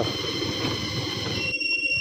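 Motorcycle riding along a rough dirt track: a steady rumble of engine, tyres and wind with a thin high whine over it. The rumble cuts off abruptly about one and a half seconds in, leaving only the high whine.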